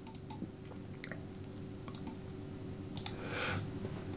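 A few scattered light clicks of a computer mouse over a faint steady hum, with a brief soft rustle about three seconds in.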